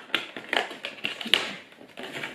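Fingers and fingernails picking at a small perforated cardboard door of an advent calendar: a run of small clicks, taps and scratches, the sharpest a little over a second in.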